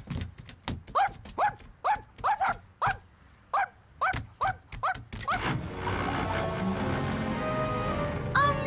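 A cartoon puppy yipping in short barks, about two a second, for the first five seconds. Steady background music then takes over.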